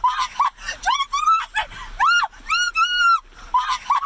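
A woman shrieking again and again in fright, short high cries and then two longer ones about two seconds in, at a bug on her leg.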